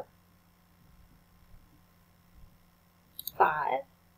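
Computer mouse clicking: a couple of sharp clicks near the end, after a long stretch of quiet room tone.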